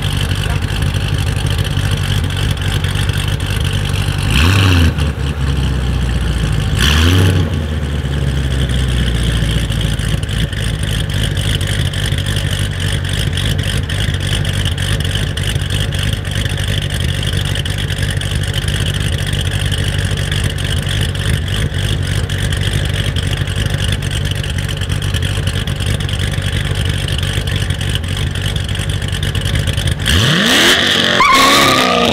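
Chevrolet Corvette C7 Stingray's V8 idling steadily at the start line, with two short throttle blips, about four and a half and seven seconds in.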